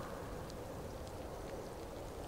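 Faint, steady outdoor ambience of a snowy winter forest: an even low hiss with no bird calls or distinct events.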